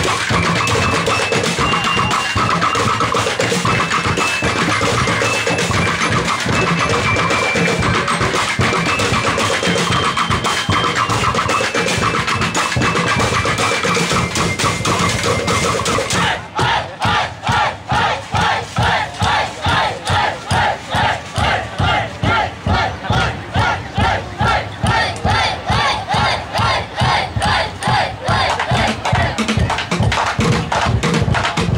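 A drumblek percussion band beating plastic barrels and drums. The first half is a dense, busy rhythm with some higher held notes over it. About halfway through it switches abruptly to a steady, even beat of strong strokes, roughly two a second.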